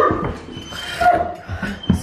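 A Great Dane ripping and tugging an old cotton bed sheet through the wire panels of his kennel: fabric tearing and rustling in short irregular spells, with a knock near the end.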